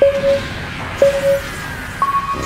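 Countdown-timer beeps: two short, identical mid-pitched beeps exactly a second apart, counting down to the start of an exercise interval. They sound over background music with a rising sweep.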